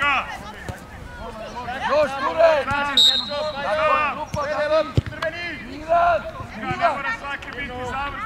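Several voices shouting and calling across a youth football pitch, overlapping throughout. About three seconds in there is a short high steady tone, and about five seconds in a single sharp thud.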